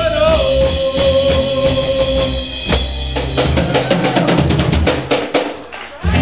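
Live rock and roll band with upright bass, electric guitar and drum kit: a long held note over the band, then a rapid drum fill past the middle, the music dropping away briefly just before the end.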